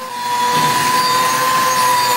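Hand-held power tool cutting steel plate with sparks flying: a steady whine over a hissing grind, growing louder over the first half second and then holding even.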